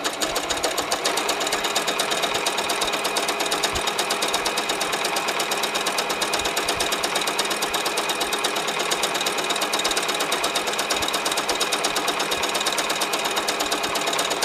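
Electric household sewing machine running at a steady speed, its needle stitching continuously along folded bias tape in a fast, even rhythm without a pause.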